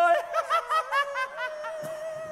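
People laughing in a quick run of short 'ha-ha-ha' bursts for about the first second and a half, over a steady held note.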